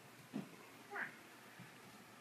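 A domestic cat giving a brief, faint meow about a second in, in an otherwise quiet room.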